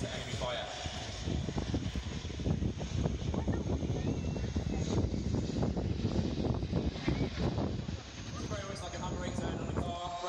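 Boeing Chinook tandem-rotor helicopter in display flight, its two rotors giving a fast, continuous beat. The sound drops back a little about eight seconds in.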